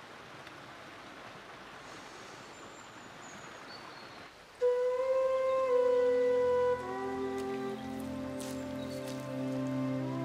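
A steady, soft hiss of outdoor ambience, like rain or running water. About four and a half seconds in, soundtrack music starts suddenly with a single held note, then spreads into layered sustained notes that carry on.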